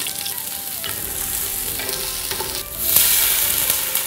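Sliced ginger, garlic, spring onion and coriander root sizzling in hot oil in a large stainless steel stockpot, with a steady hiss that grows louder about three seconds in.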